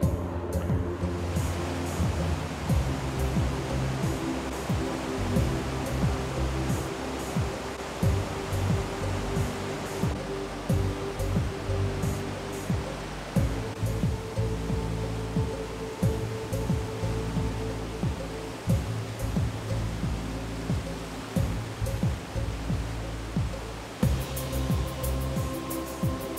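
Floodwater rushing through a swollen creek, a steady, even wash of churning water, heard under background music with sustained notes.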